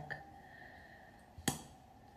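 A single sharp click about one and a half seconds in, as a mascara tube is opened and its wand pulled out.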